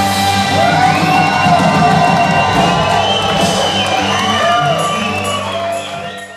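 A live country band with electric guitars and drums playing loudly on held notes while the crowd cheers and whoops; the music fades out near the end.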